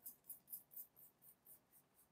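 Near silence with a few faint, light scratches, about four a second, from a small wooden stick working floating silver pigment across wet resin.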